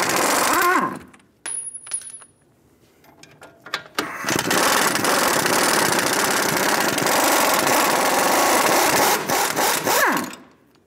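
Pneumatic impact wrench spinning a strut-to-knuckle nut. It runs at full speed and winds down with a falling whine about a second in, then a few light metallic clicks follow. It runs again from about four seconds in and winds down near the end.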